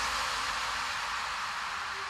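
A white-noise wash slowly fading in an electronic dance track's breakdown, with no beat or bass under it. A faint steady tone enters near the end.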